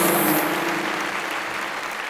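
Studio audience applauding, slowly dying down. The last held notes of a music sting end about half a second in.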